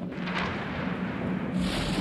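Rumbling whoosh sound effect of a TV weather-radar graphics sting, thunder-like, with a low steady hum beneath and a brighter hiss near the end.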